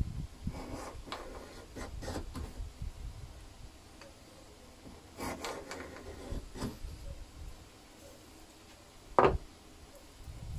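Small block plane shaving a thin strip of ash in a planing board: a few short push strokes of the blade across the wood, in two groups, then one sharp knock near the end.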